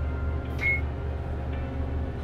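A single short, high electronic beep about half a second in, over a steady low hum.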